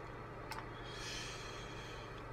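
Quiet room tone with a steady low hum; a small click about half a second in, then a soft breath out.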